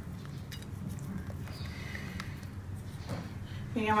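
Low steady background hum with a few faint clicks. A woman's voice starts just before the end.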